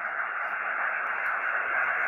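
Steady hiss of HF band noise from a Xiegu X6100 transceiver's speaker, tuned in upper sideband on the 20-metre band with no station heard, the hiss held to the receiver's narrow voice passband. It is the noise picked up by an external long-wire antenna.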